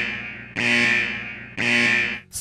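Alarm-like warning sound effect: a buzzing, steady-pitched tone blasted about once a second, each blast starting sharply and fading away.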